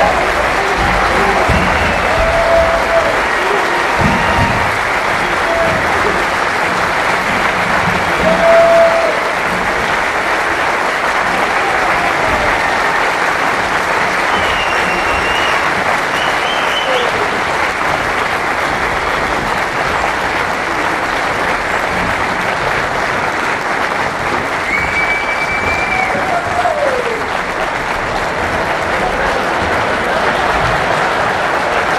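Theatre audience applauding steadily, with a few scattered whoops and yells over the clapping.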